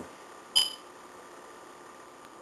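A single brief high-pitched blip about half a second in, ringing for a moment, then faint steady room hiss.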